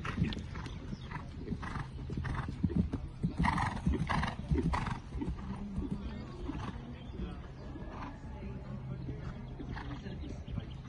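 Holsteiner horse cantering on grass turf: hoofbeats and short regular sounds about every half second in time with its strides, loudest about three to five seconds in.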